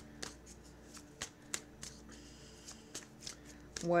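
A deck of tarot cards being shuffled by hand: a string of light, irregular card clicks.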